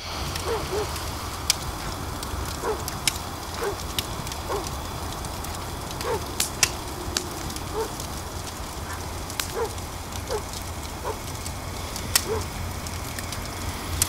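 Open fire crackling, with sharp pops scattered irregularly over a steady hiss of night ambience. Short, rising animal calls come roughly once a second.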